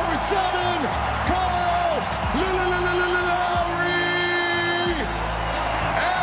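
Arena PA sound with music and a steady bass under it. Over the music a voice holds long, drawn-out calls that fall off in pitch at their ends; the longest is held for about two and a half seconds.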